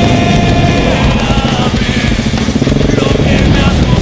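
Heavy rock music laid over the ride, with the single-cylinder engine of a 2010 KTM 690 Enduro R motorcycle running underneath it.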